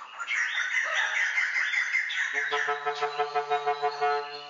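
White-crested laughing thrushes calling in a fast, warbling chatter. About two seconds in, a low, steady-pitched tone joins, pulsing about six times a second.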